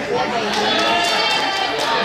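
Several voices calling and shouting, with one high, drawn-out shout from about half a second in.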